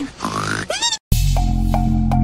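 Cartoon snoring sound effect: a low, grunting snort followed by a whistling glide. It cuts off about a second in, and after a brief gap music with a steady beat begins.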